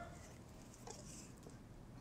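Near silence: room tone, with a couple of faint soft ticks about a second in as paracord is worked around a PVC pipe knotting tool.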